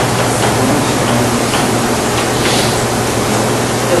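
Steady hiss with a low steady hum underneath: the background noise of a lecture-hall recording.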